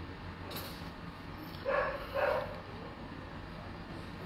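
A dog barking twice in quick succession, a little under two seconds in, over a steady low background rumble.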